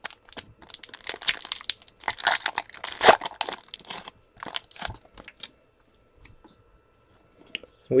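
A foil trading-card pack being torn open by hand, its wrapper crinkling and tearing for about four seconds, then a few lighter rustles as the cards are pulled out.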